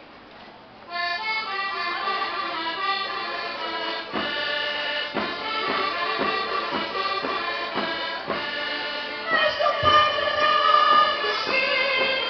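Accordion-led Portuguese folk dance music starts about a second in, with a steady beat of about two strokes a second, and grows louder near the end.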